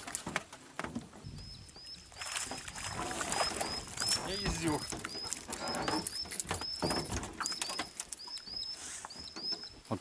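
A bird calling over and over with short, high chirps, about three a second and often in pairs, starting about a second in. Faint scattered clicks run underneath.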